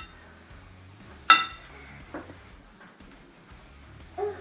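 A metal fork clinks once, sharply, against a glass bowl, the strike ringing briefly, with a couple of fainter taps around it.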